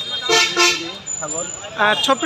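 A man's voice, with a vehicle horn tooting briefly in the background.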